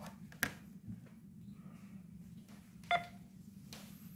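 A smartphone handled, with a soft click near the start and one short electronic beep about three seconds in, over a faint steady low hum.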